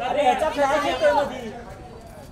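Speech only: several people talking over one another, fading after about a second and a half.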